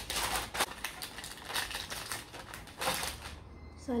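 Baking paper crinkling and rustling as it is folded and pressed into a cake tin to line it. The crackling stops a little after three seconds in.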